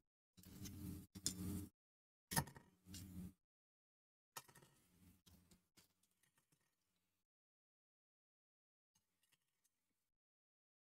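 Faint knocks and clatter of scissors, paintbrushes and other tools being set into a 3D-printed plastic holder, with the sharpest click about two and a half seconds in and another near the middle. Near silence for the rest.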